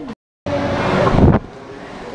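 Loud, even rushing background noise with a faint steady hum, swelling about a second in. It comes after a short break in the sound at a cut.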